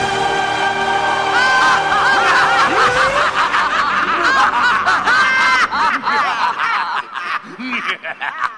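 Show-soundtrack music holds a chord, then from about a second and a half in, many voices laughing at once take over, thinning out near the end.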